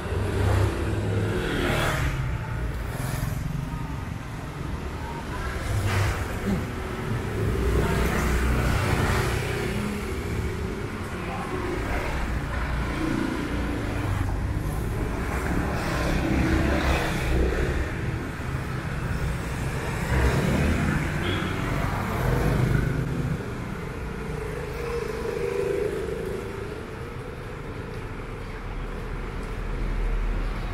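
Street traffic: motor scooters and cars passing close by on a narrow street, their small engines rising and fading in turn over a steady background rumble.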